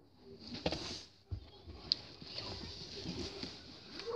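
Rustling and knocking of someone moving and getting up close to the recording device, with a dull thump just after a second in and a sharp click about two seconds in.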